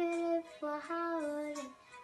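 Young girl singing an Arabic Christian hymn (tarnima) solo, holding long notes that step down in pitch, with a short break about a quarter of the way in.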